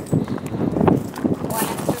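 Mostly people talking, with a few light knocks of movement; no gunfire.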